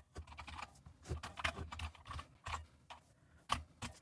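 Typing on a computer keyboard: faint, irregular keystrokes, with a pause of about a second near the end.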